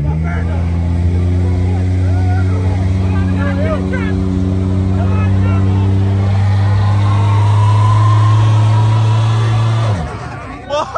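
Car engine held at high, steady revs during a rear-wheel burnout, the note creeping up slightly before it cuts off suddenly near the end. Crowd voices are faint beneath it.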